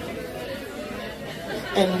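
Indistinct chatter and talk between songs, with a man's voice starting to speak louder near the end.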